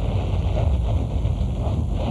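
Cars driving past in a steady, noisy rumble, with wind buffeting the microphone.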